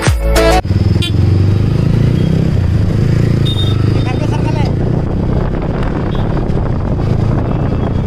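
Motorcycle engine running with road and wind noise heard from on the bike while riding in traffic, starting as the music cuts off about half a second in. A short high beep sounds about three and a half seconds in.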